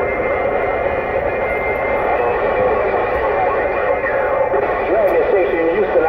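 President Lincoln II+ radio receiving a distant station on 27.085 MHz: a distorted, unintelligible voice buried in a steady rush of static from the radio's speaker.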